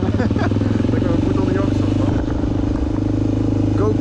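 Honda XR400 dirt bike's single-cylinder four-stroke engine running at a steady pitch while being ridden, with voices over it.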